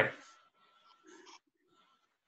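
The end of a man's spoken word fading out, then near silence over the call, with one faint short sound about a second in.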